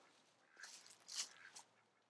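Faint quacking of ducks in the background, two short calls about half a second apart, otherwise near silence.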